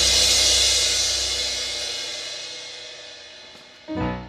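Final crash on a drum kit's cymbals ringing out and fading slowly, over a low sustained chord that dies away within the first second. Just before the end, a short low sound rises briefly and fades.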